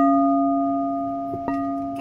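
Singing bowl struck with a wooden mallet: one strike at the start and another about one and a half seconds in, after a light tap. The bowl rings with a steady low tone and higher overtones that slowly fade.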